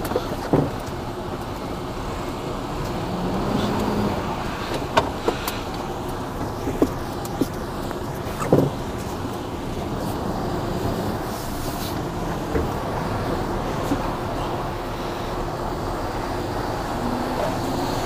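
A tipper lorry's diesel engine running steadily, heard from inside the cab as the lorry shunts slowly round a tight turn. A few sharp clicks and knocks sound over it.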